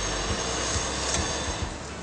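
Steady roar of a restaurant's gas wok burner under food cooking in the wok, with a light clink of the metal ladle against the wok about a second in.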